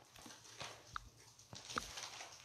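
A near-quiet pause in a small room with a few faint short clicks, one about a second in and two more near the end.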